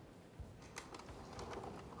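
Faint, scattered soft thuds and taps of bare feet on a stage floor as dancers move, with no music.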